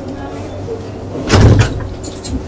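A sudden bang or thump, the loudest sound here, a little over a second in, over a steady low hum and faint background voices.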